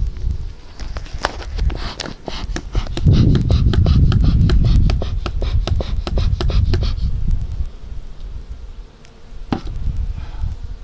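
Beehive equipment being handled: a quick run of sharp clicks and scrapes, with a heavy low rumble on the microphone from about three to five seconds in, easing off after about seven seconds.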